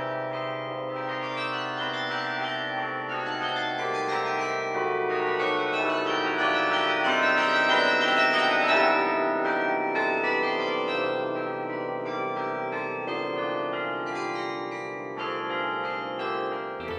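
The Singing Tower's 60-bell carillon playing a tune from its baton keyboard, many bell notes ringing and overlapping.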